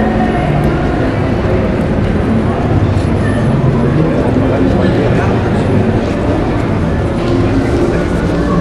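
Busy metro station walkway: loud, steady crowd chatter over a continuous low rumble of station and vehicle noise.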